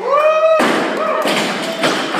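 A barbell loaded to 145 kg with rubber bumper plates is dropped from overhead onto the lifting platform, landing with a heavy thud about half a second in. Another thud follows near the end.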